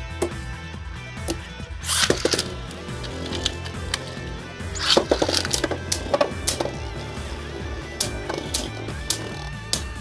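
Background music with a steady bass line, over a few sharp plastic clicks and knocks as Beyblade tops are launched into a plastic stadium and spin and clash. The hits come about two seconds in, around five seconds, and again near eight seconds.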